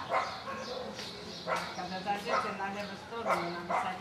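A dog barking several times, in short sharp barks spread across a few seconds, with people's voices.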